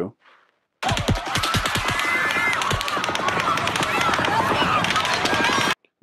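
Rapid rifle fire recorded on a cell phone's microphone, sharp cracks several per second starting about a second in and cutting off just before the end, with people screaming and shouting beneath. Deeper booms are mixed among the cracks, which are taken as a different gun firing alongside the rifle.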